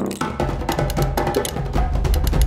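Rapid, irregular clicking of a hand-held can opener being cranked around the lid of a large tin can, over background music with a steady bass.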